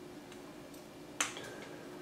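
Small handling sounds as monofilament fishing line is worked into a knot on a swivel: a couple of faint ticks, then one sharp click a little past halfway, over a faint steady room hum.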